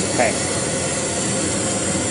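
MDG ICE Fog Q low-fog machine running on liquid CO2, giving a steady rushing hiss.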